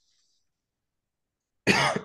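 Near silence, then near the end a woman gives a short, loud cough.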